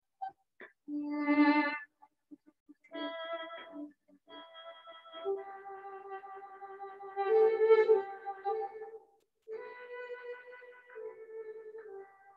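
Electronic wind instrument playing a slow praise-song melody in sustained, synth-toned notes, in four phrases with short breath gaps between them; the loudest notes come at about seven to eight seconds in.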